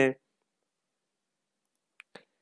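The last syllable of a man's speech, then dead silence, with one faint click at the very end.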